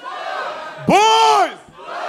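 Call-and-response chant: an audience yells and cheers, and about a second in a man shouts one long, drawn-out 'Boys!' through a microphone, his pitch rising and then falling. The crowd noise carries on after his call.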